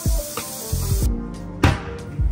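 Background music with a beat, over the hiss of a tap running into a sink as water is splashed on the face. The water hiss cuts off sharply about halfway through.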